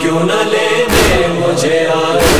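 A chorus chanting a noha, a Shia lament, in long held voices, with a few deep thuds marking the beat about a second apart.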